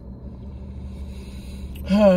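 A woman draws a long breath in over a steady low hum inside the car, then begins a sigh that falls in pitch right at the end.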